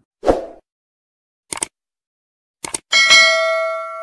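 A subscribe-button animation sound effect: a soft thump, then two sharp mouse-style clicks about a second apart, followed by a bright bell ding that rings and fades out.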